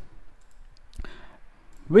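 A single computer mouse click about a second in, with faint room tone around it.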